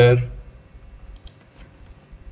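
A few faint, sharp clicks of computer mouse and keyboard keys as a name is clicked into and typed into a text box.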